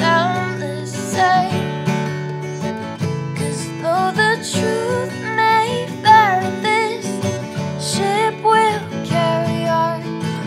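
Acoustic guitar strummed steadily, with a woman's voice singing a wordless, gliding melody over it in short phrases.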